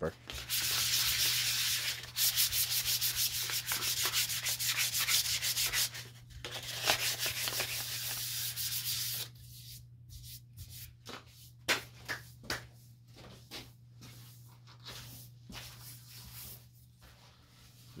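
Light hand sanding of a cured polyurethane finish on a segmented maple vessel with 320-grit sandpaper, a scuff-sand between coats. Quick back-and-forth strokes, dense and loud for about the first nine seconds, then lighter, scattered strokes.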